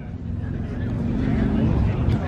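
A car engine idling steadily, growing slightly louder over the two seconds, with faint voices in the background.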